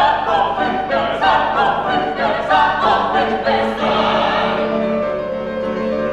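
An ensemble of operatic voices, men and women together, singing full-voiced with vibrato over a piano accompaniment. The voices drop out about five seconds in, leaving the piano playing on.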